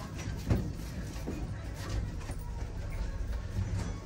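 Low steady hum inside a lift car, with a few faint clicks and knocks.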